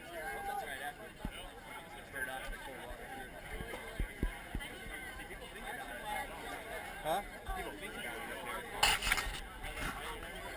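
Chatter of a waiting crowd, many voices overlapping in the distance with occasional calls. Near the end, a short, louder rustle and knock of a hand handling the camera.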